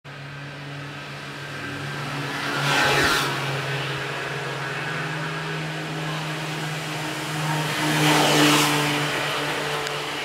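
A steady motor hum, with two louder swells of rushing noise, about three seconds and about eight seconds in.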